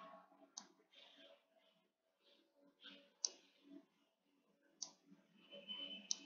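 Near silence broken by three faint, sharp clicks spread a second or two apart, from the pen or mouse input used to draw on the screen.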